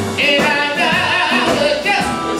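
Live blues band playing loudly, with a high lead line wavering in pitch, held from just after the start almost to the end, over the band.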